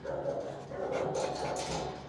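Dogs barking in a shelter kennel block, in two stretches, the longer one in the second half.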